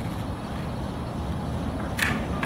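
Steady low outdoor rumble with no distinct sounds in it.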